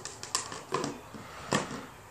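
About four short plastic clicks and knocks as a plastic garden-product tub and its lid are handled and set down on grass, the loudest a little after the start and about one and a half seconds in.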